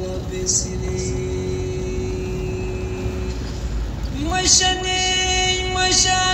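A car running along a road, its low engine and tyre rumble heard from inside, with a song playing over it. A held note carries through the first few seconds, then the singing comes back in about four seconds in.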